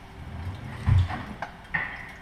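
Things handled on a kitchen counter: a dull thump about a second in, then a couple of lighter knocks.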